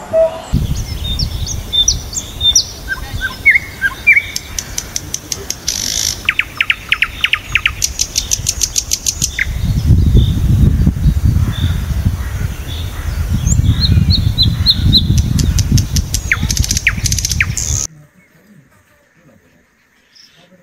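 Small birds chirping and calling, with quick rapid trills twice, over a low rumble that grows louder past the middle; the sound cuts off suddenly about two seconds before the end.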